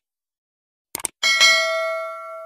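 Subscribe-button sound effects: a quick pair of mouse clicks about a second in, then a bell ding that rings with several tones and fades out.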